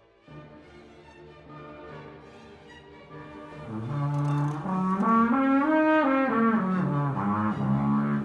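Homemade garden-hose natural horn, a looped hose with a mouthpiece and a funnel bell, played as a series of notes up the harmonic series and back down, getting loud about halfway in. With no taper in the hose the intervals are out of tune: the octave's top note comes out much sharper.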